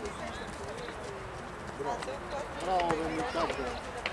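Voices shouting and calling out across an outdoor football pitch during play, over a steady background hiss; the calls grow louder about three seconds in, with one held shout.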